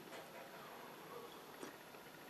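Near silence: faint room tone, with a quiet sip from a stainless steel mug about one and a half seconds in.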